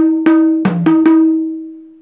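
Madal, the Nepali double-headed hand drum, struck by hand in a quick run of about five strokes mixing a ringing higher-pitched tone and a deeper tone. The last stroke is left to ring and fades away over about a second.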